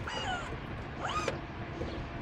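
Power-folding rear seat mechanism in a Chevrolet Tahoe squeaking twice over a low rumble: a short falling squeak at the start and a rising one about a second in.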